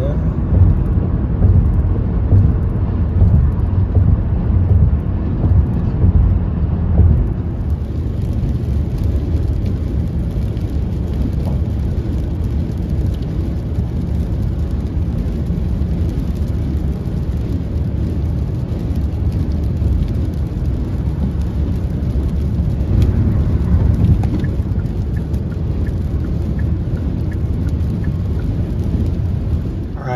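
Steady low rumble of road, tyre and engine noise inside a moving car's cabin at highway speed. About seven seconds in the sound changes, and a faint hiss with light ticks of rain on the windshield joins the rumble.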